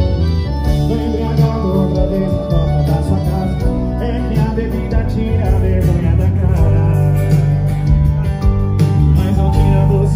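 Live sertanejo band music played loud through a stage PA, with heavy bass and drums under guitar and some singing.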